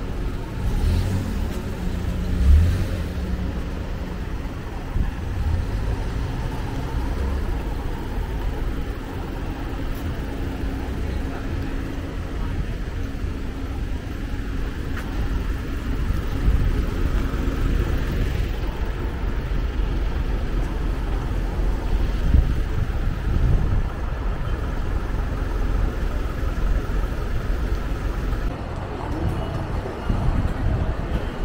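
Street ambience of road traffic and vehicle engines running, with indistinct voices of passers-by and a low thump about two and a half seconds in.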